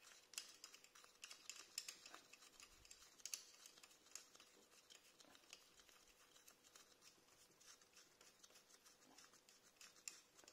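Near silence with faint scratches and light metallic clicks: a gloved hand unscrewing the bolt from a freshly set rivet nut inside a motorcycle exhaust silencer.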